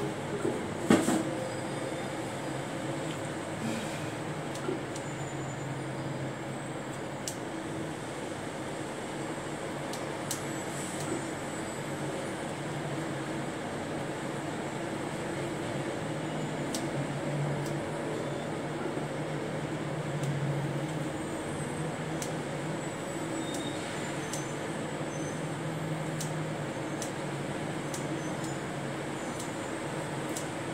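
A steady low mechanical hum throughout, with scattered soft clicks as kitchen scissors snip through raw chicken, and a sharper knock about a second in.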